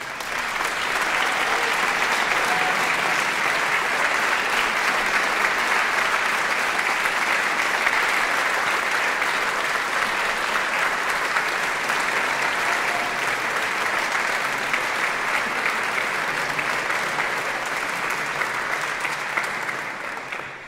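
Audience applauding, building up within the first second and then holding steady, easing off slightly near the end.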